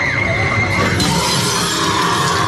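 Loud haunted-maze soundtrack of dense horror music, with a sudden crash like shattering glass about a second in.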